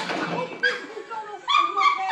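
A girl falling to the floor: a sudden clatter at the start, then her short, high-pitched yelps and cries.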